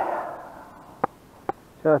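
Two sharp clicks about half a second apart from handling a spinning rod and reel while pulling on a snagged lure, followed by a man's voice near the end.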